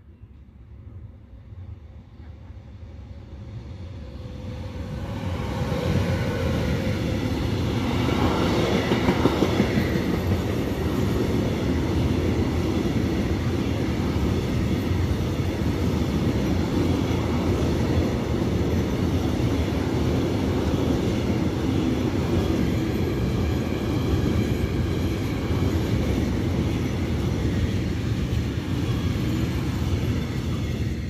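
Freight train hauled by an E483 Medway electric locomotive passing through a station at speed. It grows louder over the first six seconds, is loudest about nine seconds in, then the container wagons go by in a long, steady rumble with wheel clatter.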